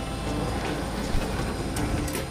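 Steady mechanical rumble of a vehicle or loading machinery running, with a sharp click a little past a second in and a fainter one near the end.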